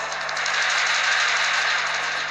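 Background music for a TV serial swelling up in the first half second and then holding at full level, with a fast shimmering texture on top.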